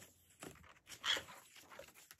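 Soft rustles and swishes of paper pages being flipped in a spiral-bound planner, with the loudest swish about a second in.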